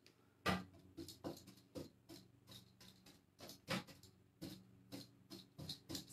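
Light, irregular taps and clicks, about two a second, from handling a small paint jar and dabbing paint onto a painted wooden dresser drawer with a rag.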